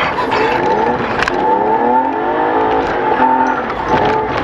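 Race car engine heard from inside the cabin, its revs rising and falling as the car slows into a bend on a snowy track, with a sharp knock about a second in.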